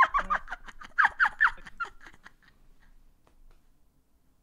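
A woman laughing hard in quick, high-pitched bursts, about five a second, that die away about two seconds in.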